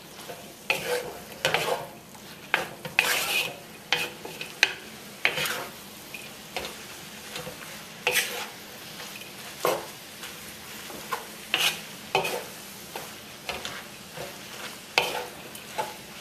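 Wooden spatula stirring and tossing noodles in a metal wok, with irregular scraping knocks about once or twice a second over a steady sizzle of frying. The clumped cooked noodles are being worked loose and coated in the sauce.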